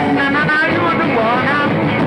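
Live rock band playing: electric guitars and drums, with a male singer's voice over them.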